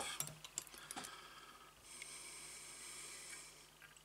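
Faint small clicks and light handling noise from fly-tying tools and thread as a wire whip-finish tool is picked up. A faint steady high-pitched sound runs for about a second and a half in the middle.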